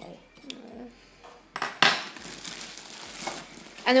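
Dry guinea pig food nuggets being mixed by hand in a ceramic bowl, with light clinks and rustling and a louder clatter about two seconds in.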